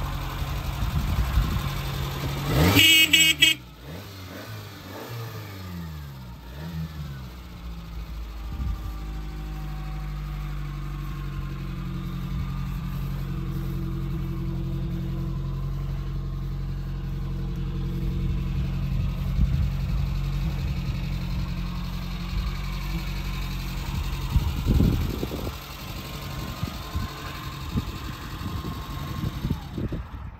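Small Suzuki 4x4's engine revving and pulling away, its pitch rising and falling through the gears, then running steadily as it drives around and comes back. A brief high-pitched squeal comes about three seconds in.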